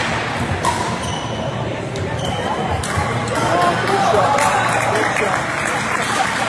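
Pickleball play on several courts: several sharp pops of paddles hitting a plastic ball and of ball bounces, echoing in a large sports hall, over indistinct chatter from the players.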